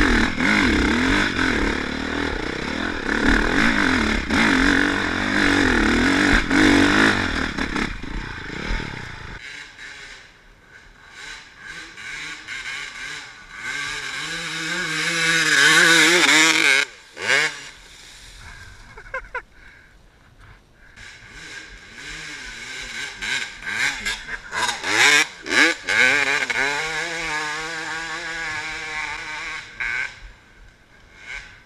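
Honda CRF450R four-stroke dirt bike engine revving hard under load up a steep hill climb, then dropping away after about nine seconds. About halfway through, a 2000 Honda CR250 two-stroke revs hard as it climbs past, rising in pitch and then cutting off suddenly, followed later by several short rev bursts.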